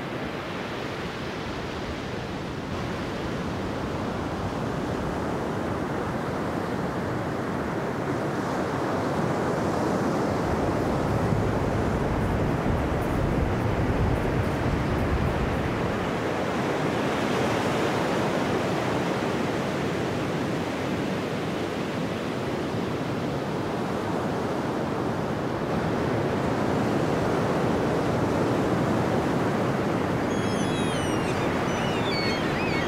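Steady sound of sea surf and wind, with wind buffeting the microphone more strongly in the middle.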